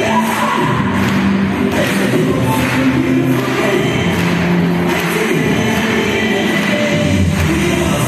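A group of young people singing together as a choir with musical accompaniment, steady and continuous, in a large hall.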